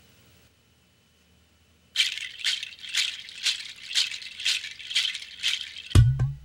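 Near silence for about two seconds, then a percussion shaker played in a steady rhythm of about two shakes a second, opening a music cue; a bass line comes in right at the end.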